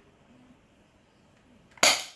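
An upgraded John Wick Q7 airsoft gun firing a single shot near the end: one sharp report with a short ringing tail, after faint room tone.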